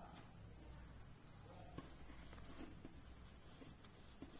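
Near silence: room tone with a faint low hum and a few faint, soft ticks.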